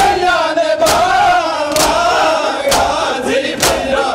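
Shia mourners doing matam: a crowd of men slapping their bare chests with open hands in unison, five loud slaps about a second apart, over chanting voices.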